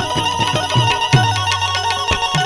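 Instrumental devotional music: tabla played in a rapid rhythm, its bass drum strokes bending downward in pitch, under a bright, steady high melody line.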